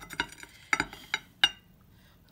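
A metal fork clinking and scraping against the inside of a glass jar, with several short, sharp clinks in the first second and a half.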